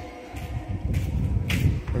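Footsteps shuffling on a stone floor, with one louder scuff about one and a half seconds in, over an uneven low rumble on the microphone.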